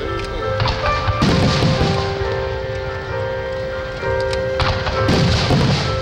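Aerial fireworks shells bursting with booms and crackling over steady music played with the show; one burst comes about a second in and a larger one near the end.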